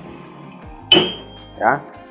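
A single sharp hammer strike on a steel T-wrench, metal on metal, ringing briefly after the hit. It is a shock tap to break loose the blender's threaded drive coupling.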